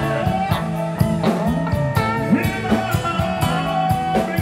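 A live rock and roll band plays a song with strummed acoustic guitars, electric guitar and drums keeping a steady beat, and a male lead vocal over them.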